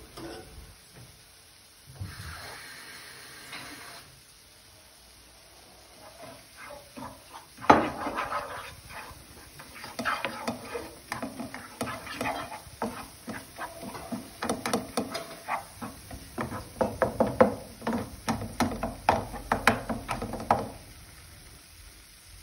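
Wooden spoon stirring and scraping roasting cornmeal around a frying pan: a sharp knock about eight seconds in, then a busy run of quick scrapes and knocks against the pan.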